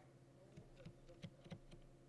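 Near silence with a few faint, scattered taps of computer keys over a low steady hum.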